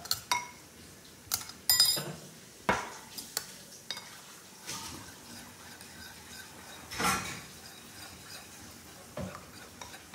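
A metal spoon clinking and knocking against a ceramic bowl while sauce is mixed, in scattered sharp clinks, a few with a brief ringing.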